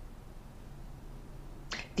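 Faint steady room tone: a low hiss with a low hum underneath. A woman's voice starts near the end.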